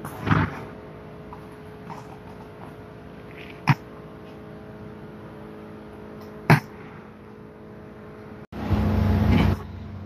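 A few sharp knocks of a horse's hooves on a concrete barn floor, spaced a few seconds apart, over a steady background hum. Near the end a louder, rougher noise starts abruptly and runs for about a second.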